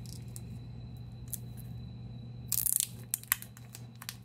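A trading card in a plastic holder being handled: a few light clicks, then a short rustle and clicks about two-thirds of the way through, over a steady low hum.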